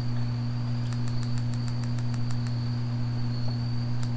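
Electric spark igniter of a propane fire pit ticking rapidly, about seven clicks a second for a second and a half starting about a second in, without the gas catching. Under it run a steady low hum and a constant high thin tone.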